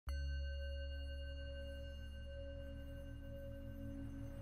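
Meditation soundscape of steady ringing tones over a low hum, starting suddenly, with a low tone pulsing on and off at an even rhythm: the isochronic tone of a theta-wave track.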